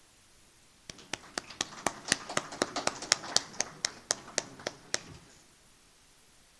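Audience applauding for about four seconds. One clapper close to the microphone stands out at about four claps a second over the rest of the room. The applause starts about a second in and dies away.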